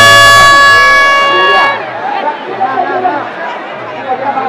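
A loud, steady horn blast on one unchanging pitch, held and then cut off suddenly under two seconds in, followed by the babble of a large crowd.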